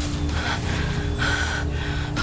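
A woman gasping and breathing hard in short breaths over background music with a held low note.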